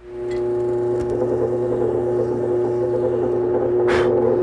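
Bench top drill press motor starting up and running at a steady pitch, with a click near the end as it is switched off and begins to wind down.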